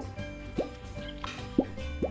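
Background music with three short cartoon-style plop sound effects, each a quick upward blip in pitch, coming near the start, just over half a second in, and about a second and a half in.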